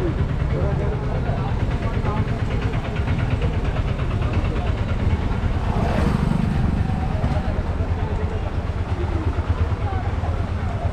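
Street traffic with motor vehicle engines running, and a motorcycle passing close about six seconds in. Voices of passers-by chatter in the background.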